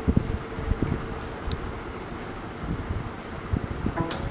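Handling noise on a hand-held compact camera's built-in microphone: irregular low rumbling and soft thumps, over a faint steady hum.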